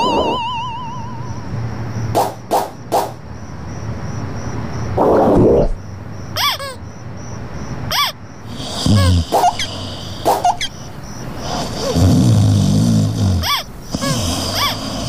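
Cartoon sound effects over soft background music: a wobbling warble at the start and a few light clicks, then sleeping characters' exaggerated snores. Several long rasping snores alternate with short whistles that rise and fall in pitch.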